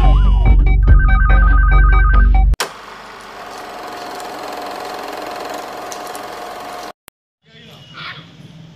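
Loud intro music with sweeping whooshes and a fast two-tone ringing pattern, cutting off abruptly about two and a half seconds in. A much quieter steady hiss with one held tone follows, then a short silence and faint outdoor background noise near the end.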